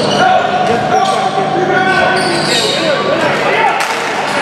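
A basketball bouncing and sharp strikes on a hardwood gym floor during live play, with players' and spectators' voices echoing in the hall.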